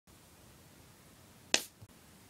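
A single sharp snap or click about one and a half seconds in, followed by a soft low thump, over faint room hiss.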